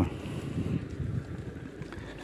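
Wind noise on the microphone of a camera carried on a moving bicycle: a low, uneven rumble.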